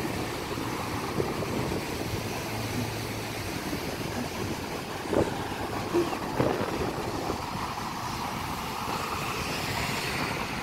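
Steady outdoor road-traffic noise from cars, with a few short thumps about five to six and a half seconds in.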